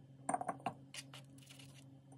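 Several quick, light clinks and taps on a glass cookie jar, bunched together early on and followed by a few scattered ticks, over a faint steady low hum.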